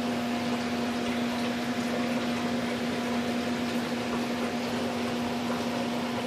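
A steady background hum: an even hiss with a constant low tone and a fainter higher tone, unchanging throughout, like a small motor or fan running.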